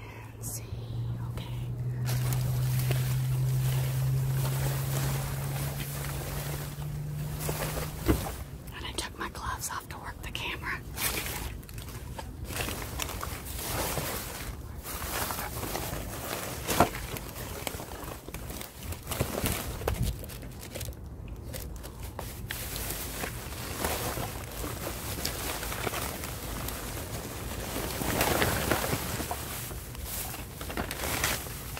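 Plastic trash bags and air-pillow packing film rustling and crinkling in irregular bursts as hands rummage through a dumpster. A steady low hum runs through the first eight seconds or so.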